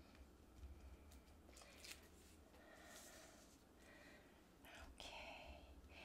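Near silence, with a few faint ticks and light scratches from a pointed plastic craft pick working at the liner of double-sided adhesive tape on cardstock.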